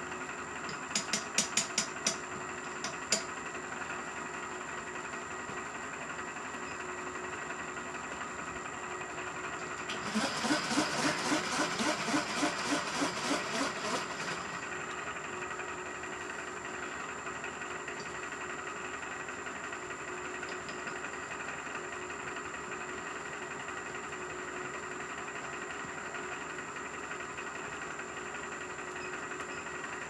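Milling machine running with a steady hum and a faint high whine. A few sharp clicks about a second in, and a burst of rapid rhythmic ticking, about five a second, for some four seconds midway.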